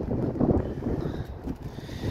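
Wind buffeting a phone microphone: an uneven, gusty low rumble.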